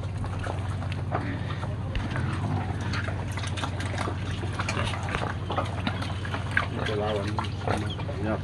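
Domestic pigs eating wet slop from a plastic tub: irregular wet slurping and smacking with many short clicks.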